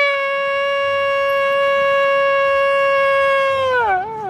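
Shofar blown in one long, steady blast that bends down in pitch and fades near the end.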